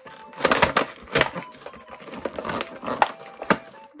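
Cardboard and paper packaging being torn and crinkled by hand: irregular crackles and short rips as the perforated windows of a toy box are pushed open.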